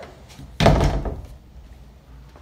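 A closet door being shut, landing with a single loud thud about half a second in that dies away within a second.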